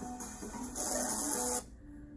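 Film soundtrack music with a steady hissing sound effect over it; the hiss cuts off abruptly about one and a half seconds in, leaving softer held notes.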